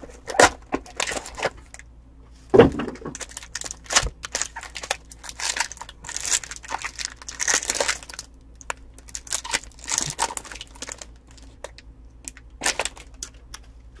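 A foil trading-card pack wrapper crinkling and tearing as it is opened by hand, with irregular crackles, rustles and a few sharper clicks from the cardboard box being handled.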